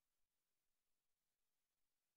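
Near silence: a recess break with no audio, only faint hiss.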